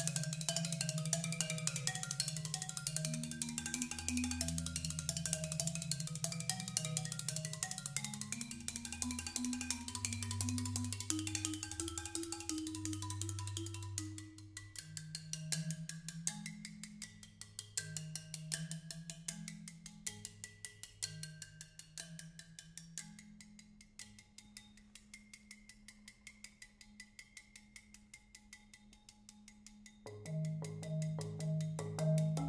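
Solo marimba played with Hot Rods (bundles of thin dowels), giving a clicky attack to each stroke: fast, dense repeated strokes over rolled low bass notes. About fourteen seconds in the playing thins out to sparser, softer notes and grows quieter still near the end.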